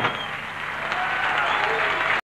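The band's last held note cuts off right at the start, and an audience applauds.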